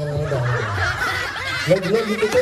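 A man's drawn-out voice falls in pitch and trails off. Then several people laugh at once, an audience reacting to a comedy bit.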